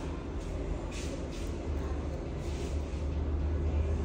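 A steady low hum under a faint hiss, with two brief soft hissing sounds, about a second in and again near the middle.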